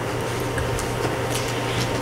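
Room tone with no speech: a steady low hum and even background noise, with a few faint small ticks.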